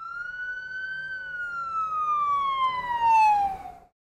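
A police siren sound effect: one long tone that rises a little and then slowly falls in pitch over about three seconds, stopping shortly before a new sound begins.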